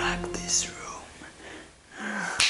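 A man's breathy, whispery vocal exclamation, with falling hissy sweeps near the start and again about half a second in, while the background music dies away in the first second.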